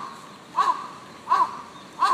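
A crow cawing repeatedly: short, clear caws about three-quarters of a second apart, each rising and then falling in pitch.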